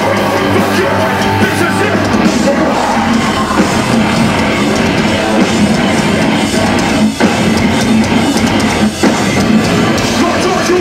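Metalcore band playing live and loud, with distorted electric guitars, bass and drum kit, heard from within the crowd. The band stops short twice, about seven and nine seconds in.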